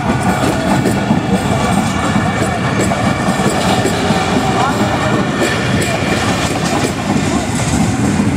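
Pakistan Railways passenger coaches rolling past close by, a steady loud rumble of wheels on the track with frequent small clacks.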